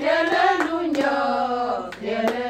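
Women singing together in held, sustained notes, with a few sharp hand claps over the singing.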